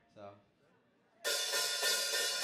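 A live band starts a song about a second in, coming in suddenly and loud with a bright cymbal wash over the drums.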